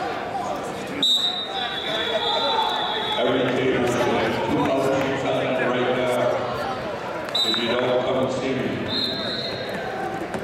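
Wrestling referee's whistle blown in a gym: one long high blast about a second in, then shorter blasts later, with voices in the hall between them.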